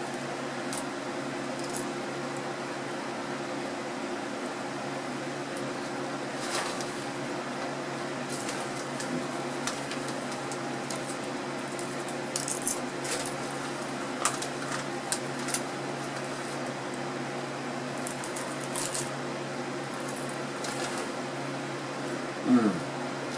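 Popcorn being eaten by the handful: scattered short crunches and crinkles of the snack bag, over a steady low hum.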